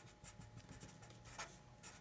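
Black felt-tip Sharpie marker writing a word on a sheet of paper: a faint run of short, quick scratching strokes.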